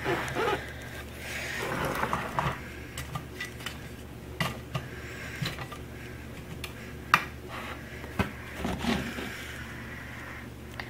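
Light clicks and taps from a die-cast scale model paver being pushed along and set down on a tabletop by hand, with one sharper tap about seven seconds in, over a low steady hum.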